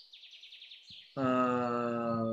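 Faint, rapid high bird chirping in the background, then about a second in a man's voice holds one long vowel at a steady pitch.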